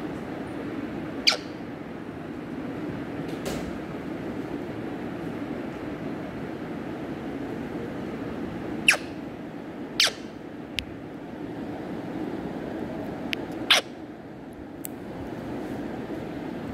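Indian ringneck parrot giving short, sharp squeaks, four loud ones and several fainter, spaced irregularly a second or more apart, over a steady low hum.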